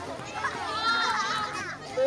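A crowd of children chattering and calling out, with one high-pitched child's voice shouting through the middle.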